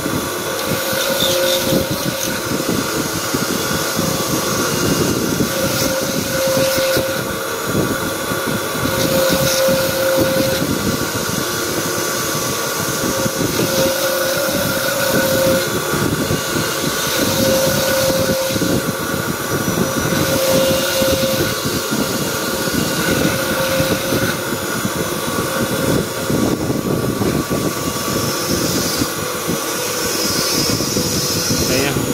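Bench polishing motor running steadily, spinning a small grinding bit in its spindle as a fossil giant-clam shell donut pendant is ground at its inner rim. The grinding tone swells and fades every few seconds over the motor's hum.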